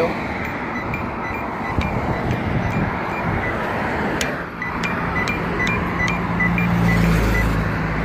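Road traffic running past the crosswalk, with a steady run of short, high ticks from the pedestrian push-button's locator tone. Past the middle a vehicle engine hums louder for a couple of seconds.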